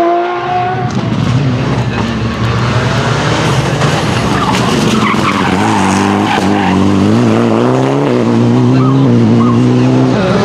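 Mitsubishi Lancer Evolution rally car's turbocharged four-cylinder engine running at wavering revs as the car slides through a tight turn, with tyres skidding and scrabbling on the loose, dusty surface. In the first second, another car's rising engine note breaks off.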